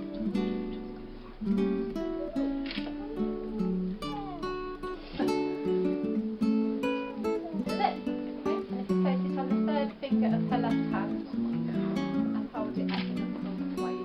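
Acoustic guitar music, plucked and strummed notes that keep changing.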